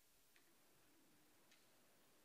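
Near silence: faint room tone with two soft clicks, about a second apart.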